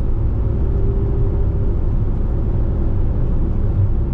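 Steady low road and engine noise of a car cruising on the interstate, heard from inside the car, with a faint steady hum in the first second and a half.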